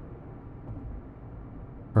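Faint, steady low rumble of a background sound bed, with no distinct events.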